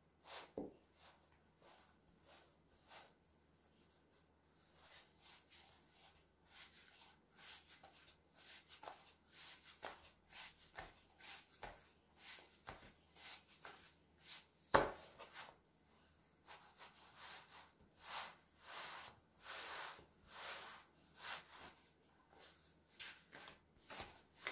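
Hands pressing and stretching soft pizza dough on a floured wooden board: faint, irregular rubbing and patting strokes, with one sharp, louder knock on the board a little past halfway.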